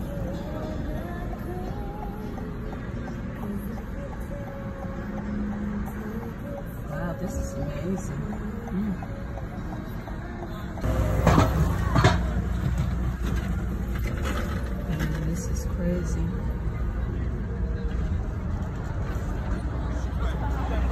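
Busy city street traffic and people's voices heard from inside a car, under music with a singing voice. About eleven seconds in the street sound grows louder and deeper, with a couple of sharp louder sounds.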